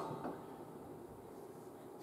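Quiet room tone with no distinct sound.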